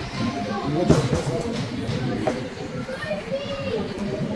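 Children's voices and chatter in a busy hall, with two sharp knocks, one about a second in and one a little past two seconds.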